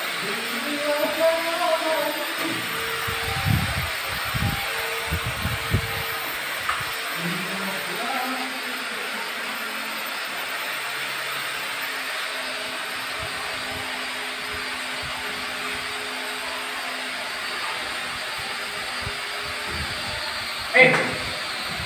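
A steady hiss of background noise, with brief muffled voices near the start and a few dull low thuds around four to six seconds in as a heavy wooden door is handled in its frame.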